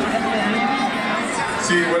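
Speech over a stadium public-address system, with a large crowd murmuring underneath.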